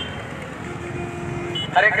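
Outdoor street background with vehicle engines running. A man's voice begins near the end.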